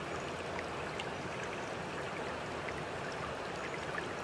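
Steady running water trickling, an even wash of water noise with no rhythm.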